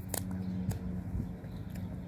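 Faint wet mouth clicks and smacks of fingers being licked clean after eating a chocolate donut, a few short clicks in two seconds, over a steady low hum.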